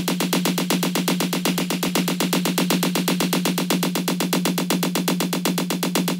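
Electronic synth part playing back from a Kontakt instrument in Cubase: fast, even repeated notes over a steady low note. A stereo enhancer's width knob is being turned up, spreading the sound wider.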